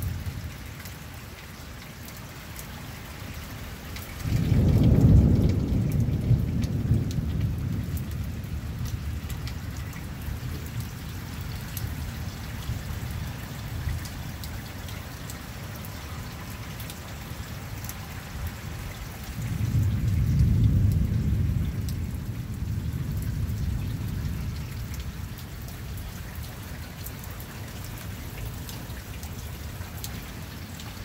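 Steady rainfall with two low rolls of thunder: the first breaks suddenly about four seconds in and is the loudest, fading over several seconds; the second swells up more gradually later on and fades away.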